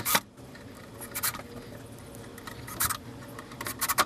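Short scraping and scratching noises from driving screws through a wooden rail into a hive box with a cordless drill, in four brief bursts spread over a few seconds.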